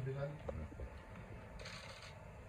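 A spoken "okay", then a low, uneven room rumble with a few faint short clicks.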